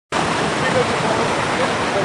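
Steady, loud rushing noise, like wind on a camera microphone, with faint voices in the background.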